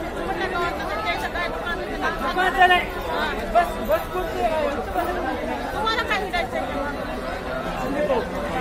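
Crowd chatter: many people talking at once in overlapping voices, with no single voice standing out.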